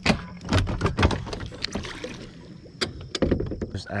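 A string of knocks, clunks and clicks of gear being handled on a fibreglass bass boat's deck, densest in the first second and a half, over a faint low steady hum.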